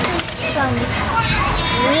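Children's voices talking and playing in the background, high-pitched and continuous, with a short click just after the start.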